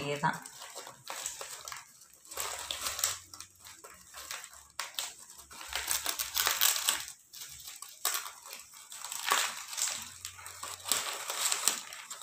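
Stiff plastic tape-wire (pattai wire) strips rustling and crinkling in irregular bursts as they are threaded, bent and pulled through a woven tray.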